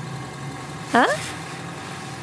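A vehicle engine idling steadily, an even low hum.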